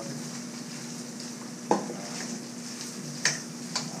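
Cooked rice sizzling in a hot wok as a metal spoon stirs it, over a steady low hum. Sharp clinks against the wok come a little under two seconds in, the loudest, and twice more near the end.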